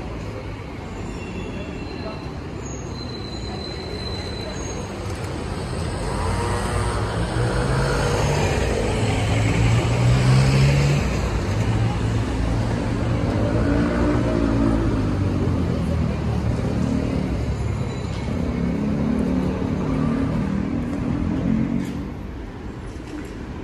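City street traffic: car engines running as vehicles pass, growing louder to a peak about ten seconds in.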